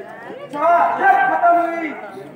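A man's voice declaiming stage dialogue, starting about half a second in, with long drawn-out vowels.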